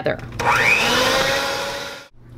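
Electric hand mixer switching on and beating cream cheese with ricotta: its motor whine rises in pitch as it spins up, then runs steadily and fades out near the end.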